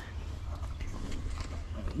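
Faint scraping and light plastic ticks as a small flathead screwdriver pries a plastic trim cover out of a car's steering wheel, over a steady low rumble.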